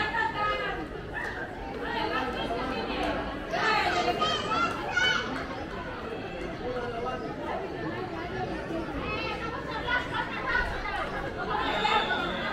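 Several people talking at once in overlapping chatter, with louder calls around four to five seconds in.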